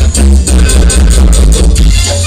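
Live band playing Latin dance music over a loud PA, with heavy bass and a steady beat, recorded from the crowd so loud that the bass saturates.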